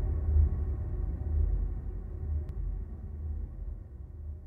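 Low rumbling drone of a news-programme intro sting, slowly fading out.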